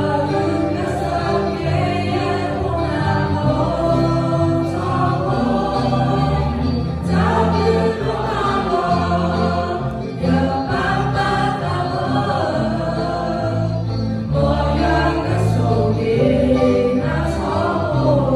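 Mixed choir of young men and women singing a hymn together, continuously.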